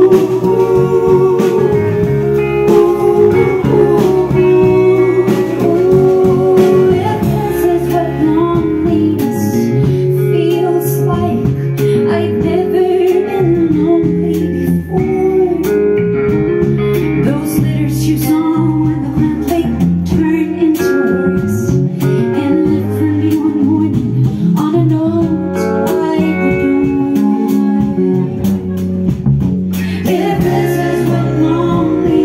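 Live folk band playing a song on acoustic and electric guitars, with singing over the strummed and picked accompaniment.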